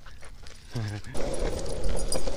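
Skateboard wheels starting to roll on pavement about a second in, a low rumble that grows louder as the husky tows the board off, with scattered clicks over it. Just before, a short vocal sound from a person.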